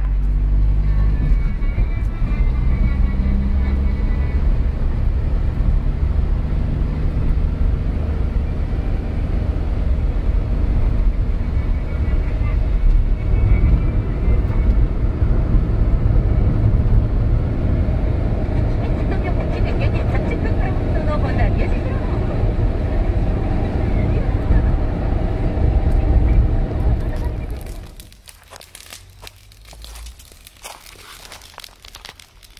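Car interior noise while driving: steady engine and tyre rumble heard from inside the cabin. It cuts off abruptly about two seconds before the end.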